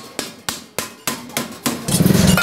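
Large hand shears snipping stainless-steel sheet: a sharp metallic click with each cut, about three a second. A louder, steady low noise sets in near the end.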